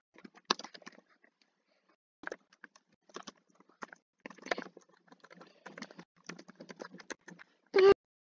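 Computer keyboard typing: irregular clusters of key clicks. A short hummed note, the loudest sound, comes near the end.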